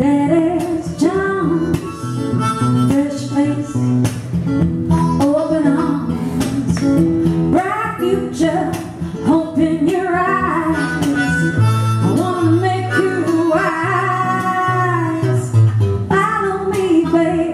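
Harmonica solo, its notes bending and wavering, over a strummed acoustic guitar.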